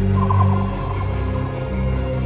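Ambient electronic music with sustained low drones. Shortly after the start, a brief rapidly pulsing, gobble-like sound at a middle pitch sounds over the drones for under a second.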